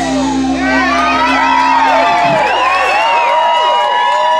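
A live band's final held chord ringing out, its low notes stopping two to three seconds in, while the audience whoops and cheers over it.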